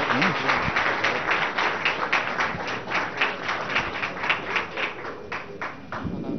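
Audience applause: many hands clapping at a steady pace, thinning and fading near the end.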